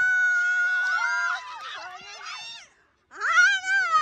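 High-pitched screaming from several voices: one long held scream for about a second and a half with others overlapping it, a brief gap, then another rising and falling scream near the end.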